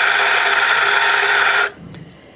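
Nuova Simonelli Grinta espresso grinder running, grinding coffee into a portafilter at a newly adjusted grind setting while dialing in espresso. A steady grinding noise that stops about three-quarters of the way through.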